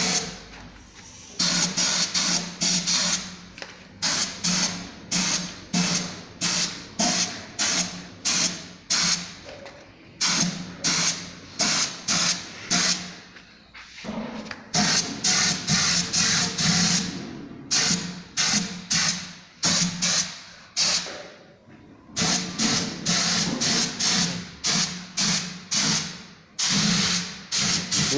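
Gravity-feed paint spray gun spraying in short, quick bursts, about two or three a second, with a few brief pauses, over a steady low hum.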